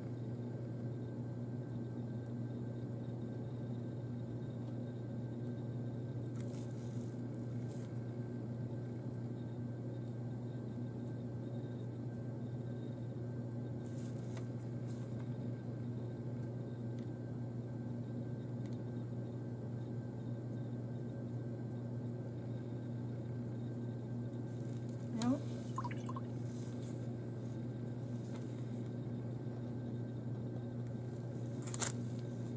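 A steady low hum runs throughout, with a few faint light taps and a short rising pitched sound about three-quarters of the way through.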